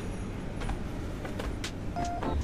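Steady low background hum of a shopping-mall interior, with a few faint clicks.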